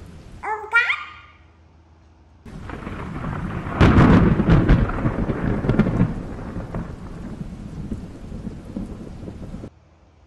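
A thunderclap with rain. A crackling rumble starts suddenly about two and a half seconds in, is loudest a second or so later with sharp cracks, then fades over several seconds and cuts off abruptly near the end.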